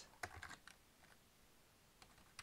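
A few faint keystrokes on a computer keyboard, all in the first second.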